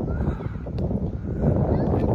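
Strong wind buffeting the microphone, a heavy rumbling noise that swells louder after the first second, with faint children's voices calling in the distance.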